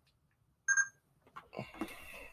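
A single short electronic beep, about a quarter second long, about two-thirds of a second into an otherwise quiet stretch, with faint soft noises near the end.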